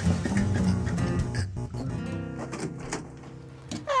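Background music: quick plucked guitar notes. A voice starts to speak just before the end.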